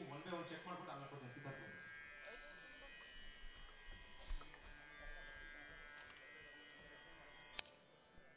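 A single high-pitched tone from a stage PA system, building steadily louder over the last two seconds and cut off suddenly near the end, typical of microphone feedback. A voice is heard briefly at the start.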